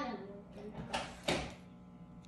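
Tarot cards being handled: two short, sharp swishes about a second in, a third of a second apart.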